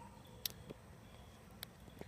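Quiet background with a few faint, brief clicks, the clearest about half a second in and another near the end.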